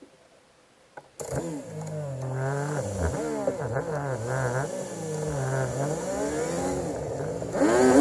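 Vehicle engine running, its pitch rising and falling over and over. It cuts in suddenly about a second in after near silence, and wind noise on the microphone grows louder near the end.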